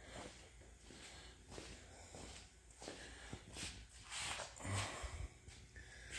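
Faint footsteps on a concrete floor, with a few louder breathy noises about three and a half to five seconds in.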